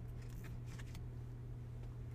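Trading cards being handled on a mat: a few faint, quick rustling slides of card against card in the first second, over a steady low hum.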